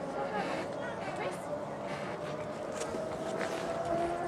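Indistinct voices in the background over a steady hum, with no clear words.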